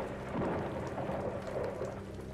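Steady rain falling, with a low rumble of thunder swelling about half a second in.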